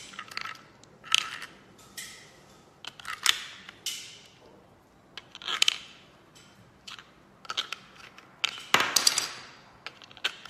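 AAA batteries being pushed one by one into the plastic battery compartment of a handheld fish finder: a series of short clicks and plastic rattles. The loudest cluster comes near the end.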